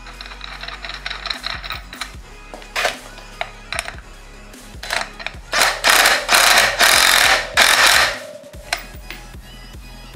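Cordless power driver spinning a socket on a front hub motor's axle nut in a few loud bursts over about three seconds, starting just past the middle, tightening the nut to hold the motor wheel in the fork. Before that, scattered light clicks and knocks of hand work on the axle hardware, over background music.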